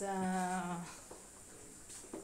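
A voice drawing out a hesitant hum on one steady pitch for just under a second, then faint room sound.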